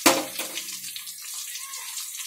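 Oil sizzling around pieces of raw mango frying in a steel kadai: a steady hiss. A sharp click comes right at the start and a fainter one about half a second in.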